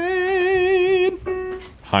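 A singing voice holding one high note with vibrato for about a second, at about F-sharp above middle C (F#4). It fades into a fainter steady tone at the same pitch.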